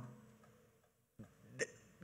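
A man's quick, sharp intake of breath, close on a handheld microphone, about one and a half seconds in, during a pause in his speech.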